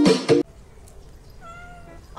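Strummed ukulele music cuts off suddenly about half a second in, then a small kitten gives one short meow about a second and a half in.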